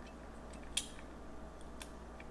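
Quiet room tone with a steady low hum, broken by one sharp click a little under a second in and a fainter tick near the end.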